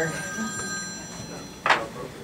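A phone ringing: several steady high electronic tones held together, fading out a little past halfway. A single sharp knock follows near the end.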